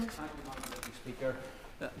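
Faint murmur of voices and rustling of papers and movement in a large debating chamber, between speakers. A man starts to speak near the end.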